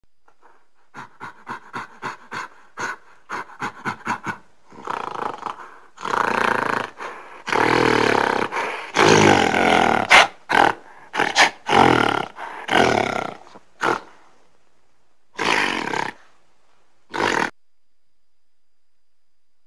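Monster roar sound effects built from animal calls. About a dozen short grunting calls come in quick succession, then a series of long, loud roars and growls, and two short roars near the end.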